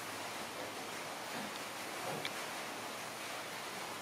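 Steady, even hiss of background noise, with faint rustling of a paper tissue being wiped across a stainless steel tabletop and a small tick a little after two seconds in.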